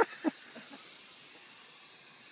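A person's laugh ending in two short bursts in the first quarter second, then only faint, steady outdoor background noise.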